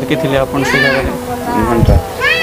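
A person's high voice rising and falling, about half a second in, among other voices.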